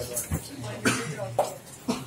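Someone coughing: about four short coughs roughly half a second apart.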